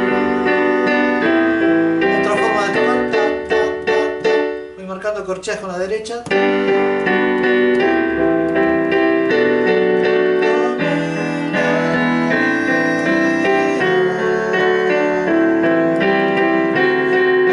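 Yamaha digital piano playing a slow bolero with both hands: a melody over bass notes and held chords, with a quicker run of notes and a brief softer passage about five seconds in.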